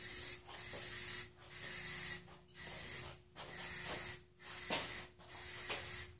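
Aerosol spray can hissing in a series of short bursts, about one a second with brief pauses between, as it is sprayed onto steel stand legs.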